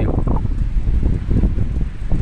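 Gusty wind buffeting the phone's microphone: a loud, uneven low rumble that flutters throughout.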